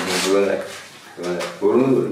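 Short unworded vocal sounds from two people, one burst in the first half second and another in the last part, with a quieter gap between.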